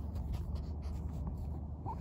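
Handling noise from a hand-held camera being carried: soft rubbing and light clicks over a steady low hum.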